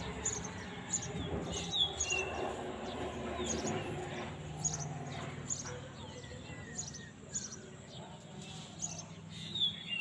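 Small birds chirping in short, high, scattered calls, with a couple of clearer chirps about two seconds in and again near the end.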